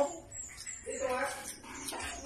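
A brief high-pitched animal whine about a second in, over faint high chirping.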